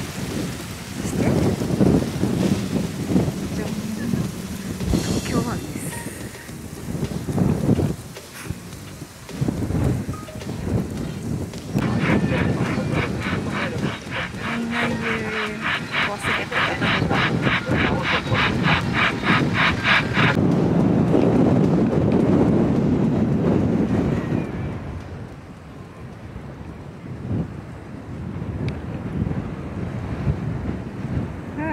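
Wind buffeting the microphone in gusts. In the middle, for about eight seconds, a rapid, even high-pitched pulsing sounds over it.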